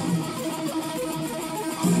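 Electric guitar playing a fast alternate-picked lead line, the notes changing rapidly with no pause.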